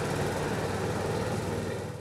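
Steady outdoor traffic noise with a motor vehicle engine running, fading out near the end.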